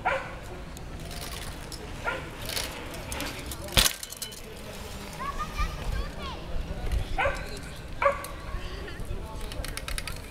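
A dog barking several times in short sharp yelps, with voices in the background, and one loud sharp knock a little under four seconds in.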